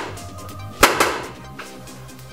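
VZ-58 rifle firing 7.62x39 rounds: two quick shots about a second in, over background music.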